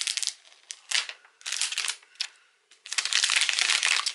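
Thin plastic shrink wrap being torn and peeled off a phone box, crinkling in short irregular bursts, then one long crinkling stretch in the last second as it is pulled free and crumpled in the hand.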